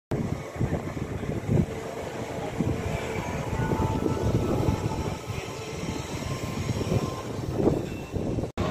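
Gusty wind buffeting the microphone: an uneven, rumbling noise that rises and falls throughout, with faint steady tones beneath.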